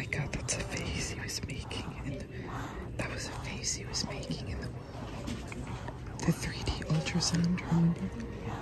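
Soft, breathy whispering close to the microphone.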